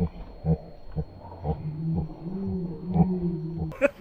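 A dog growling: short low growls about twice a second, then one longer drawn-out growl. Music with guitar comes in near the end.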